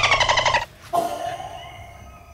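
A person's high-pitched, quavering shriek for about half a second, followed about a second in by a shorter rising squeal that fades away.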